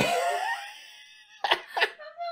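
A man laughing, breathy and wheezy, trailing off and then breaking out in two short sharp bursts of laughter near the end.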